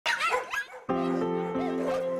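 Dogs barking for just under a second, then music comes in with steady held chords.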